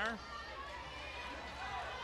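Faint ambience of a wrestling venue: low audience noise over a steady low electrical hum, with the tail of a commentator's word at the very start.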